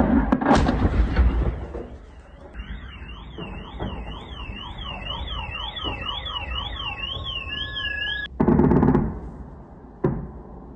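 Explosions from the footage of the sea-drone attack on the Crimean Bridge: loud blasts in the first second, then an electronic alarm warbling quickly up and down about twice a second, cut off by another loud blast near the end.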